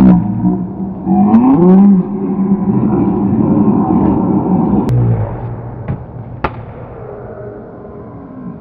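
A dodgeball smacks at the start, then a man cries out with a wordless yell whose pitch swoops up and down for a few seconds. A few sharp knocks and thuds on the wooden gym floor follow.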